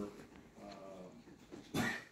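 A man's hesitating speech in a small room: a drawn-out word trails off at the start, a faint low voice follows, and a short, sharp 'uh' comes near the end.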